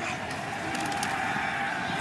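Steady stadium and field ambience of a football broadcast: an even wash of crowd-like noise with no commentary over it.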